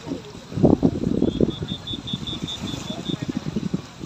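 Indistinct background voices, with a quick run of short high-pitched beeps, about five a second, through the middle.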